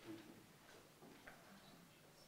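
Near silence: room tone with a few faint small ticks.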